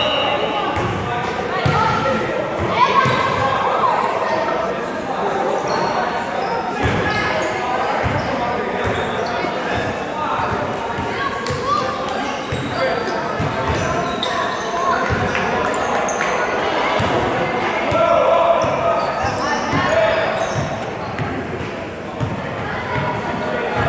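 Basketballs bouncing on a hardwood gym floor, a run of short knocks, under indistinct shouting and chatter from many players. All of it echoes in a large gym.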